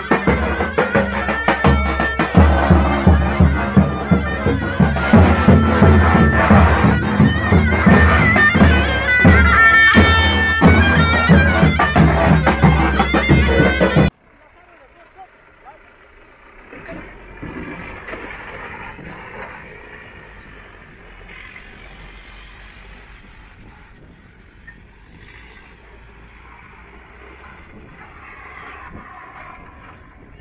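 Turkish davul bass drum beaten in a steady rhythm, with a wind instrument playing a folk tune over it; the music cuts off suddenly about halfway through. A much fainter engine sound follows, from an off-road Toyota Hilux pickup climbing a dirt mound.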